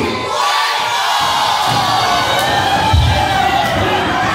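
Lucha libre crowd shouting and cheering, many voices at once, as the music cuts off near the start. A heavy thud sounds about three seconds in.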